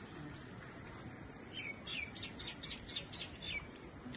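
A small bird calling: a rapid run of about ten short, high, falling chirps, starting about a second and a half in and lasting about two seconds.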